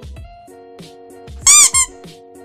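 Background music with a steady beat and held chords. About one and a half seconds in come two loud, high-pitched squeaks, the first longer than the second, each rising and falling in pitch.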